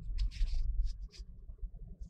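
Low road and engine rumble inside a moving car's cabin, with a few short scratchy rustles close to the microphone in the first second or so.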